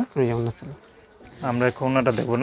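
A man's voice speaking, with a pause of about a second in the middle.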